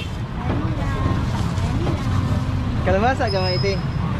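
Steady low rumble of street traffic, with a person talking briefly about three seconds in.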